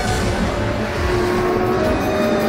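Outro theme music mixed with a car engine revving sound effect. The engine rumble comes in at the start.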